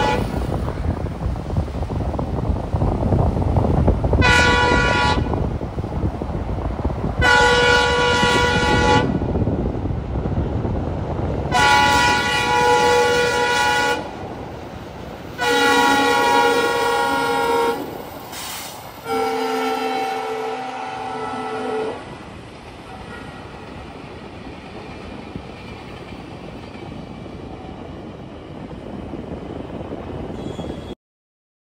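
Indian Railways diesel locomotive's air horn sounding in a series of about six blasts, each one to two and a half seconds long, the last one lower in pitch, over the low rumble of the running train. After about 22 seconds the horn stops and only a quieter steady background remains.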